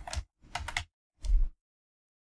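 Computer keyboard being typed: a short word keyed in three quick groups of keystrokes within the first second and a half, then the typing stops.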